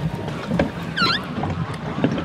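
Pedal boat under way on a lake: a steady wash of water noise, with a short high squeak about a second in.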